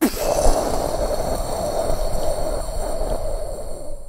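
Explosion sound effect: a sudden blast followed by a steady, noisy rumble that cuts off abruptly after about four seconds.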